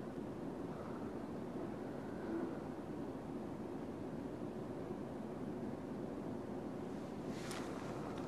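Quiet, steady background hiss of a room picked up by an open microphone, with no speech.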